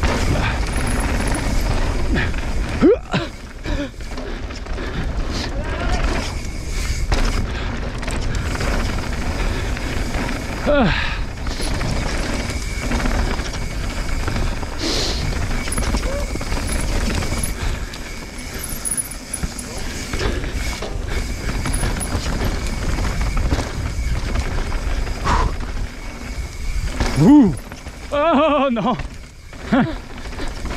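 Mountain bike rolling fast down a dry dirt trail: steady tyre and trail noise with wind rushing over the camera microphone. A few short voice sounds from the rider break in, the longest near the end.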